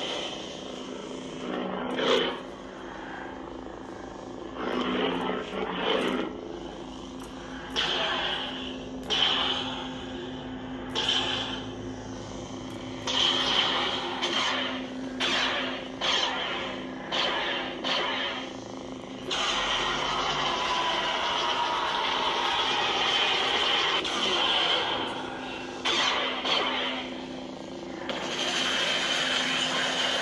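Proffie lightsaber sound board playing the Death in Darkness soundfont through the hilt speaker: a steady low hum with swing sounds swelling and fading as the blade is moved, about a dozen of them. From about two-thirds in the sound turns louder and more even.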